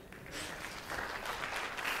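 Class audience applauding, many hands clapping, starting about half a second in.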